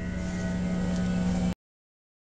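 Steady electrical hum and buzz from a guitar amplifier with an electric guitar plugged in and not being played. It cuts off abruptly about a second and a half in.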